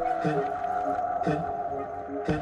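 Dance/electronic track in a stripped-back breakdown with the drums gone: a held steady synth tone under short gliding pitched notes that come about once a second, with light high hiss-like strokes.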